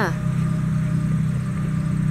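Steady low hum of a car engine idling.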